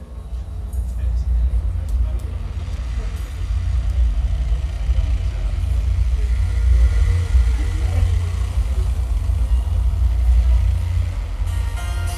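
Loud, steady deep rumble through a live-music club's sound system, with audience voices under it. About half a second before the end the band starts playing, with guitar coming in.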